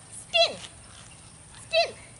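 Small dog giving two short, high-pitched yips, one about half a second in and one near the end, each sliding down in pitch.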